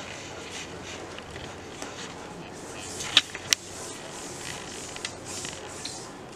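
Quiet handling on a kitchen counter as dough pieces are set into a metal baking tray, over a steady low hiss, with two sharp clicks close together a little past three seconds in.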